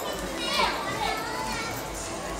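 A young child's high voice, calling out about half a second in, over the background noise of a busy indoor shop.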